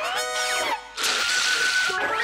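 Cartoon sound effects: a cluster of rising, swooping pitch glides, then about a second of dense hiss with a steady high whistle through it that cuts off abruptly.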